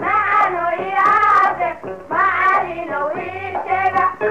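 Music: a sung melody over a steady beat.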